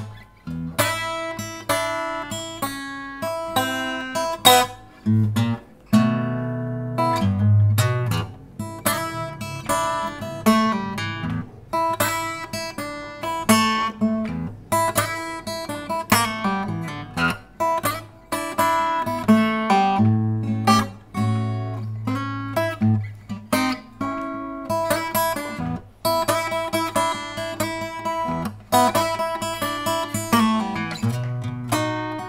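Vester by Segovia acoustic guitar played lead: melody lines of separately plucked single notes, with a few strummed chords between phrases.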